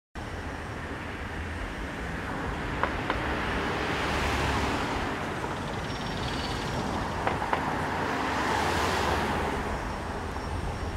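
City street traffic: a steady hum of road noise with cars passing, swelling twice. Two pairs of light clicks.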